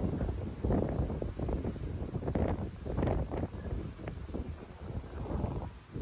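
Wind buffeting the microphone in uneven gusts on a ship's open deck at sea, over the rush of sea water alongside the hull.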